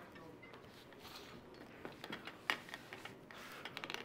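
Quiet room with a few faint clicks and knocks as a studio light on its stand is handled and moved, the sharpest click about two and a half seconds in.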